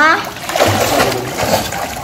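Pool water splashing as a swimmer pushes off and strokes through it, in a burst from about half a second in that dies down near the end.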